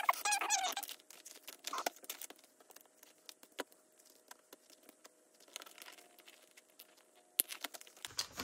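Clear vinyl binder pocket pages rustling and crinkling as they are handled and flipped, with a squeak of plastic rubbing in the first second and scattered small clicks throughout, one sharper click near the end.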